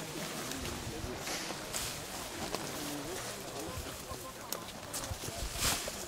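Leaves and branches of coffee bushes rustling and brushing, with footsteps on dirt, as people push through the rows; several short crackling brushes, the loudest near the end, over faint voices.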